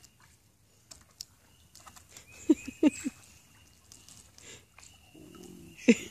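Faint wet clicks and light splashes of a small dog stepping and lapping in a puddle of water on a mesh pool safety cover. A few short bursts of stifled laughter come about halfway through.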